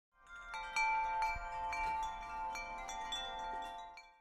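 Chimes ringing: bright bell-like notes, with a new one struck about every half second and each ringing on, the whole dying away at the end.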